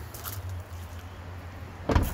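A car's rear side door shut with one solid thump near the end, over a low, steady background rumble.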